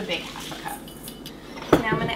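Kitchen utensils and measuring cups clattering against a stainless steel mixing bowl while dry ingredients are measured: light handling noise, then one sharp clink near the end.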